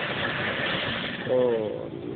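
A rough, even rushing noise for about the first second, then a person's voice briefly, about two thirds of the way in.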